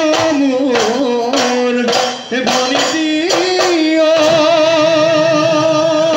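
Bihu folk music played live: dhol drums beating under a held, wavering melody line.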